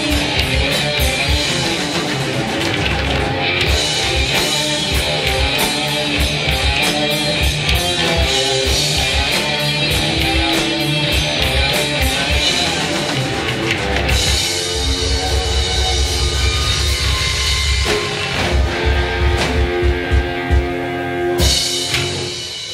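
Live rock band playing an instrumental passage without vocals: electric guitars over a drum kit, stopping abruptly just before the end.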